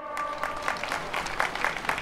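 A crowd applauding: many hand claps in a dense, steady patter.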